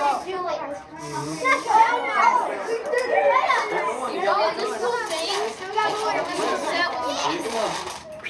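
Several children's voices talking over one another, an indistinct chatter with no clear words.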